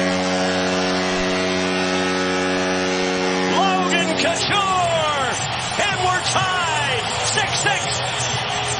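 Hockey arena goal horn blowing one long steady blast that signals a home-team goal, cutting off about four seconds in, followed by shouting and whooping voices.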